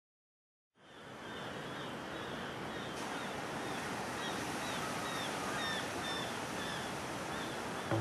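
Ocean surf noise fading in about a second in and then running steadily, with short high chirps repeating about twice a second over it.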